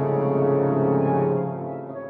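Sampled orchestral music: a loud, low brass chord held and then dying away about a second and a half in.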